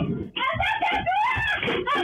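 A woman screaming frantically in Spanish at an intruder in a small shop: '¡Andate!' ('get out!') over and over, then crying '¡Ayuda!' ('help!'). The voice is high and strained, with a short break about a third of a second in, and it is heard through a security camera's microphone.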